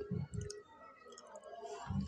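Close-miked chewing of a mouthful of fried food, with repeated jaw thuds and wet mouth clicks. It is strong at the start, eases off in the middle and picks up again near the end.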